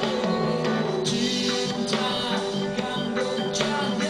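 A reggae band playing live: a male singer over electric guitars, electric bass and drum kit.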